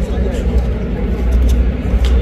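Street ambience: a steady low rumble of passing traffic with indistinct background voices and a few faint clicks.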